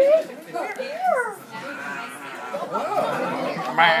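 Several people talking over each other, with a laugh near the end.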